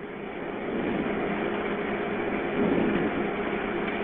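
Steady rushing noise carried over a telephone line, cut off at the top like all phone audio. It swells over the first second and then holds level.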